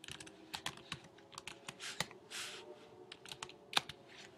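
Typing on a computer keyboard: a quiet string of separate key clicks, with the loudest keystrokes about two seconds in and near the end.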